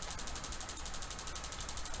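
Furnace spark igniter rod snapping across its eighth-inch gap to ground in a fast, even train of clicks, fired by an intermittent pilot spark ignition module during its trial for ignition.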